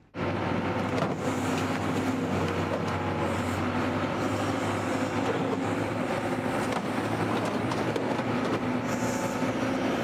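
Heavy diesel machinery in a scrapyard, an excavator and a wheel loader, running steadily with a low drone. Scattered metallic clanks come from scrap being handled.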